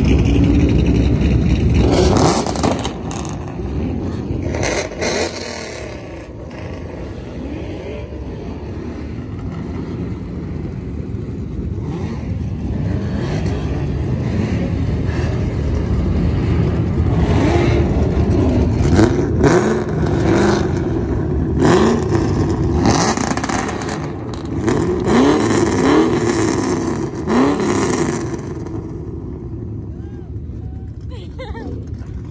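Several car engines running in a group of cars pulling out together, with repeated revving that rises and falls, strongest in the second half.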